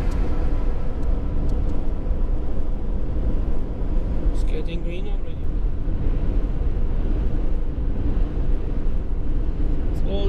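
Steady low rumble of a car's engine and tyres on the highway, heard from inside the cabin.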